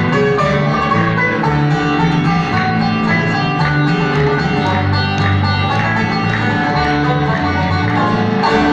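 Live bluegrass band playing, a plucked upright bass line under other plucked string instruments.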